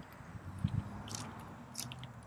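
Faint footsteps crunching on gravel: a few short, crisp crunches against a quiet outdoor background.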